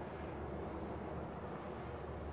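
Steady low hum with a faint hiss: background room noise, with no distinct events.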